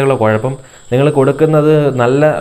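A man speaking to the camera, with a short pause about half a second in. A steady, faint high-pitched tone runs under his voice throughout.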